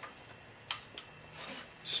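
Light metal clicks and a short scrape as the BMW F650GS's rear brake disc is worked in between the caliper's pads. The disc catches on the pads and has to be forced past them. Two small clicks come about a second apart, then a louder scrape near the end.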